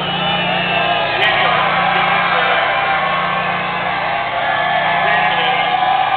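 Large grandstand crowd cheering and whooping, many voices at once, over a steady low hum.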